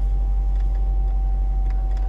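Audi RS6 parking sensors sounding one continuous steady tone, the signal that the car is very close to an obstacle, over the low hum of the idling engine inside the cabin.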